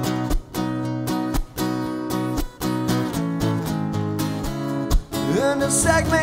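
Acoustic guitar strummed in a steady rhythm, chords ringing between the strokes.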